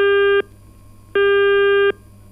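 Telephone busy tone coming over the studio phone line: a steady mid-pitched beep switching on and off about every three-quarters of a second, sounding twice. The call to the phone-in guest is not getting through.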